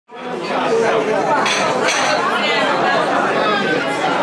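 Crowd chatter: many people talking at once in a large room, with no single voice standing out. It fades in quickly at the start.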